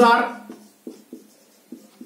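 Felt-tip marker writing on a whiteboard: a few short, faint strokes as a word is written by hand.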